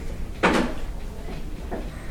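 A single sharp knock about half a second in, then a few faint taps, over a steady low rumble.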